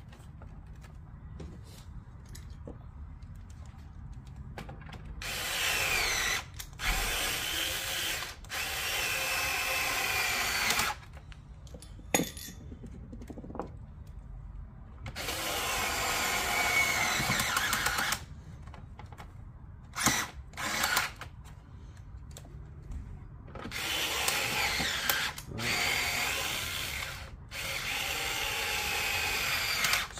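Black+Decker cordless electric screwdriver driving screws into a plastic radio case, run in about seven separate bursts of one to four seconds. Its motor whine shifts in pitch as the screws bite and tighten.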